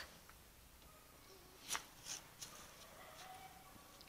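Near silence, broken by one brief faint rustle a little before halfway and a few softer ones after it.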